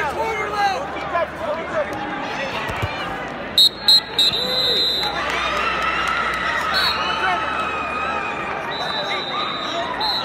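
Arena crowd murmur, cut through about three and a half seconds in by two sharp, loud blasts of a referee's whistle and then a longer blast, marking the end of the wrestling bout. The crowd noise swells afterwards.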